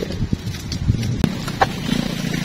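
Footsteps on a hard floor: a few uneven steps, with a couple of sharp clicks in the second half.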